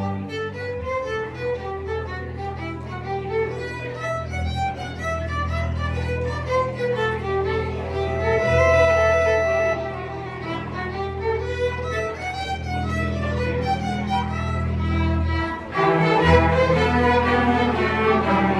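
A string orchestra of violins, violas, cellos and double bass playing, the low strings holding long notes under a moving melody of short notes. Near the end the playing breaks off for a moment, then the full section comes back in louder.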